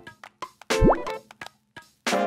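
A cartoon-style 'bloop' sound effect, a single quick rising pitch sweep a little under a second in, set among a few short clicks in a break in the background music.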